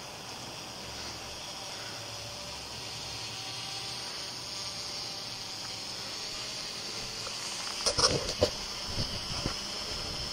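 Flir Black Hornet PRS nano helicopter drone hovering, its tiny rotor giving a steady, high-pitched hiss-like whir. A few short knocks come near the end.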